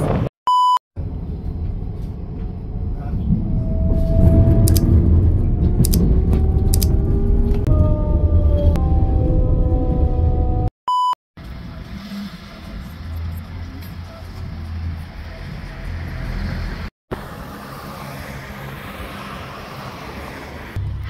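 Rumble of a moving electric passenger train heard inside the carriage, with whining tones that glide up and down in pitch. It is bracketed by two short electronic beeps about ten seconds apart, each set in a brief moment of silence. After the second beep comes a quieter, steady background.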